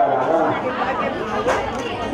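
Several people talking at once in a gathered crowd, with a short sharp click about one and a half seconds in.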